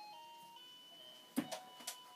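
A faint, simple electronic tune: plain single notes that step from one pitch to the next. Two sharp clicks come near the end.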